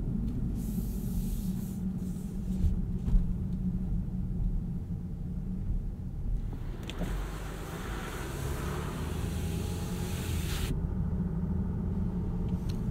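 Inside the cabin of a 2018 Land Rover Discovery td6 at low speed: a steady low rumble of the six-cylinder turbo diesel and road noise. A hiss comes in briefly about a second in, and again from about seven seconds until it cuts off suddenly near eleven seconds.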